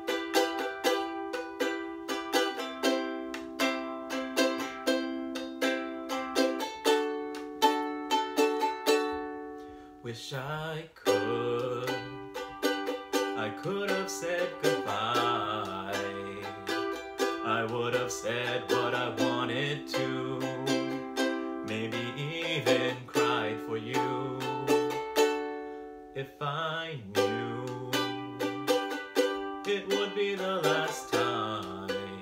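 A ukulele strummed alone for about ten seconds, then a man's voice singing over it, with the strumming going on beneath the voice.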